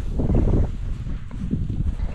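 Cross-country skis sliding and crunching through deep snow, with a low rumble of wind on the microphone; the sound swells briefly about half a second in.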